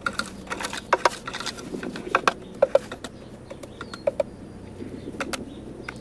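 A garden hoe scraping and knocking through a peat moss and perlite potting mix in a plastic wheelbarrow. The scrapes and clicks come irregularly, thickest in the first half, and fewer and fainter later.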